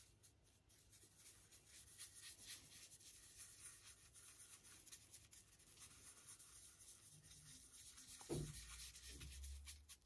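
Faint scratching of paintbrush bristles scrubbed over the textured surface of a 3D-printed model base as grey paint is dry-brushed on, with a soft low bump about eight seconds in.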